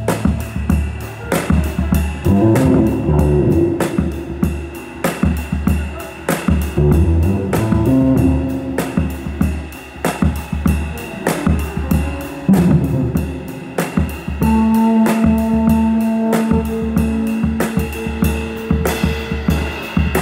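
Live improvised jazz from a quartet of piano, two basses and drum kit. The drums are played busily, several hits a second, over long held low bass notes.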